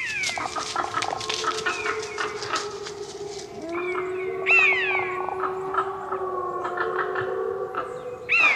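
Several wolves howling together, with overlapping drawn-out howls and short sharp yips early on. One low howl holds steady from about halfway through, while higher howls fall in pitch above it.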